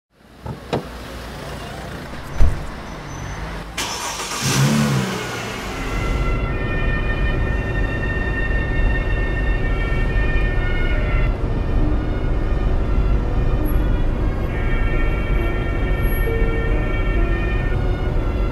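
A sharp knock about two seconds in, then a car engine that catches about four seconds in and runs with a steady low rumble. A few sustained high tones come and go above it.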